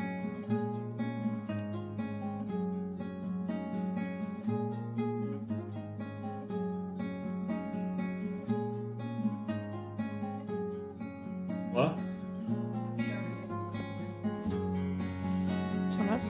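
Background music with a steady plucked-string pattern.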